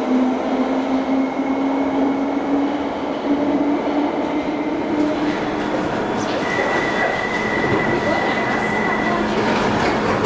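A London Underground 1972-stock tube train pulling away, its traction motors giving a whine that rises slowly in pitch as it accelerates. After about five seconds this gives way to station platform noise beside a standing train, with a steady high-pitched tone lasting about three seconds.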